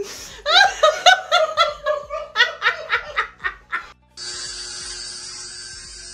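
High-pitched laughter in quick repeated bursts, about four a second, lasting some three and a half seconds. After a short break about four seconds in, electric hair clippers buzz steadily with a constant hum.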